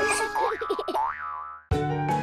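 Instrumental children's cartoon music winding down with a few wobbling, springy pitch slides that fade out to a brief silence, then a new piece of music starts suddenly near the end.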